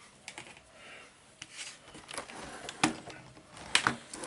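Scattered sharp clicks and light knocks of a plastic laptop being handled on a desk, the two loudest near the end.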